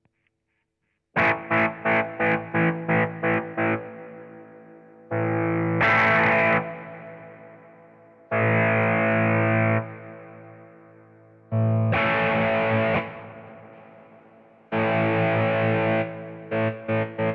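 Overdriven electric guitar chords through an optical tremolo pedal, chopped on and off: a fast choppy pulse about three times a second at first, then a slow pulse where the chord comes in loud for about a second and a half every three seconds and falls back in between.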